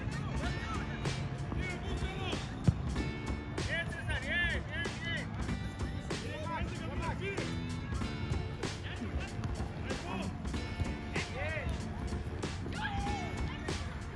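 Music playing with spectators' voices calling and shouting over it, and one sharp knock a little under three seconds in.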